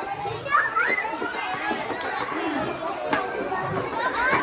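A group of young children chattering and calling out, many high voices overlapping at once.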